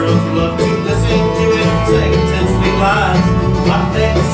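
Live bluegrass band playing an instrumental passage with no singing: fiddle and mandolin over strummed acoustic guitar and a walking upright bass.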